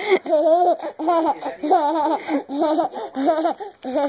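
A toddler laughing in a string of short, high-pitched bursts of giggles.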